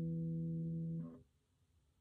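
The closing chord of an acoustic guitar rings steadily, then is cut off suddenly about a second in, leaving near silence.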